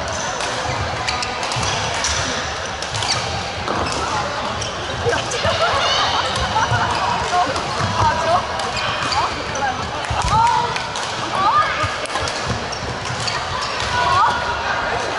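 Badminton rally in a busy, echoing sports hall: rackets striking the shuttlecock in sharp clicks and shoes squeaking on the court floor, over a constant babble of voices from around the hall.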